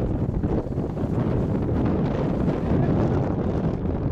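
Wind buffeting the camera microphone: a loud, continuous low rumble that drowns out the field sounds.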